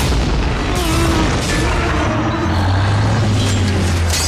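A sudden loud boom from a film explosion, running on into a sustained roar, with a deep low drone swelling about halfway through.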